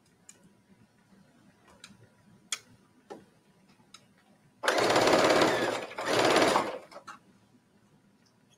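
Electric sewing machine stitching binding onto stretch mesh fabric in two short runs, starting about halfway through, the first about a second long and the second a little shorter, with a brief pause between. A few faint taps come before them.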